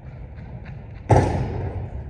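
A single loud thud about a second in, echoing and fading slowly through a large gymnasium.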